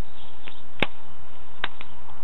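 Sharp clicks from an airsoft MP40 replica's parts being worked by hand. The loudest is just under a second in, and two more come close together near the end.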